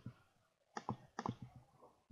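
A few faint computer mouse clicks, scattered through the second half.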